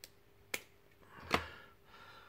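Three small sharp clicks as a quick-change fishing swivel is handled and its clip worked between the fingers, the loudest about a second and a quarter in.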